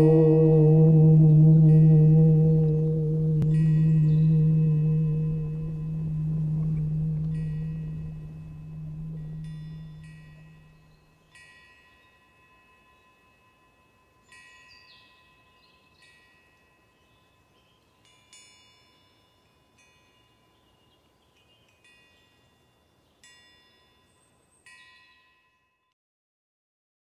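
A deep struck bell or gong humming with a slow wavering swell and fading away over about eleven seconds, while light metal wind chimes ring in single, irregularly spaced strikes about every one to two seconds, carrying on alone once the hum has died.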